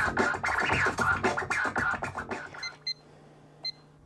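Record being scratched on a turntable over a beat, in quick back-and-forth strokes, which stops about two and a half seconds in. A low hum and a few short electronic beeps from a cordless phone's keypad follow.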